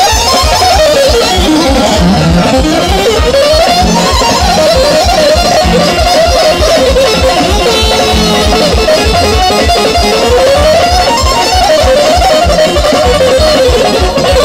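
Loud amplified live band music: a fast, ornamented lead melody full of sliding pitch bends, played on a Korg Kronos keyboard, over a steady pulsing bass beat.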